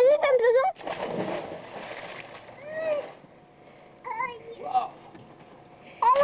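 A person jumping into a backyard swimming pool: a splash hits the water a little under a second in and settles over the next couple of seconds. Children shout and squeal just before it and again afterwards.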